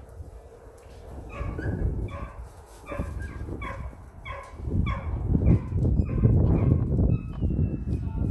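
Border collie puppy barking in a quick run of short, high yips, about two a second. Loud rustling and scuffing through the wood-chip bedding builds under the yips in the second half.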